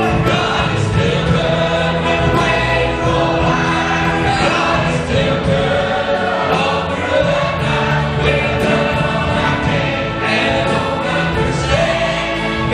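Adult church choir and three male soloists on handheld microphones singing a gospel song together, backed by a band with drums.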